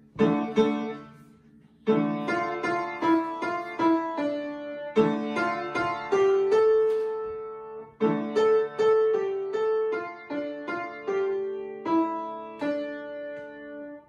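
Upright piano played by a young child: a simple beginner piece with held low notes under a plain tune, in short phrases with a brief break about a second in.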